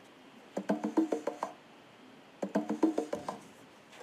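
UE Boom Bluetooth speaker playing its pairing tone, a quick run of short notes heard twice, about two seconds apart. The repeating sound means the speaker has entered Bluetooth pairing mode and can now be found by the computer.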